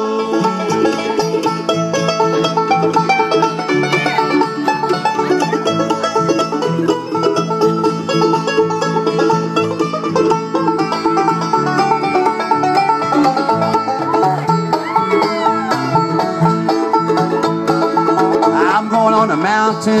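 Live bluegrass band playing an instrumental break between sung verses, with banjo, fiddle, mandolin, acoustic guitar and upright bass.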